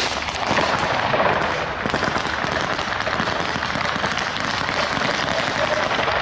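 Gunfire: many sharp shots in rapid, irregular succession, with a steady noise underneath.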